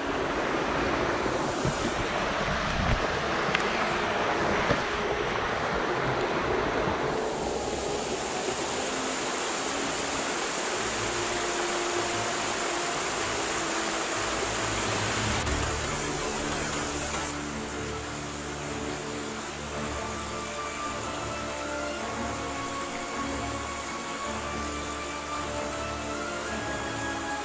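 Steady rush of a shallow rippling stream, with background music fading in about halfway through and growing toward the end.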